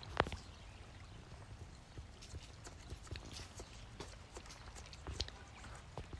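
Faint scattered clicks and scratches of a long-handled brush working rubbing alcohol into a cactus's crevices to scrape off cochineal scale, with a sharper knock just after the start and another about five seconds in.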